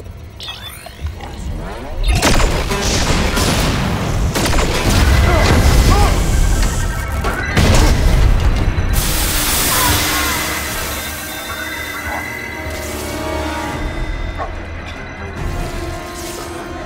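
Sci-fi battle sound mix under a dramatic orchestral score: deep booms and crashes of a starship bridge taking hits, with consoles sparking. There are several heavy impacts, about two seconds in and again around seven to nine seconds.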